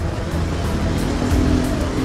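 Street traffic noise: vehicle engines running on a busy road, a steady low rumble, with background music mixed in.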